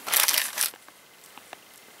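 Clear plastic parts bag crinkling as it is picked up and handled, a short crackly burst lasting under a second at the start.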